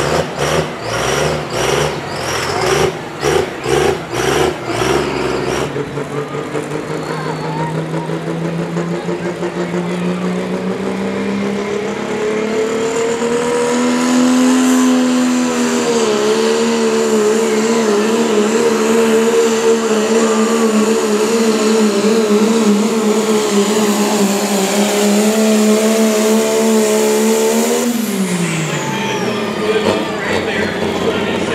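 Dodge Ram Cummins turbo-diesel pulling a weight-transfer sled: the throttle pulses for the first few seconds, then the engine is held at high, steady revs under load, rising a little about halfway. Near the end the throttle is released and the revs fall sharply, with a falling turbo whistle.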